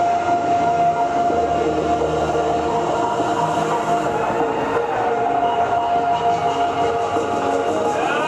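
Music with a long held note that slides down into pitch and sustains for several seconds, then slides in again about five seconds in, over steady accompanying tones.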